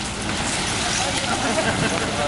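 Steady wind noise on the microphone over elephants wading and splashing through a shallow river, with faint voices.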